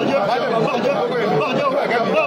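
Speech: several voices talking at once, overlapping without a break.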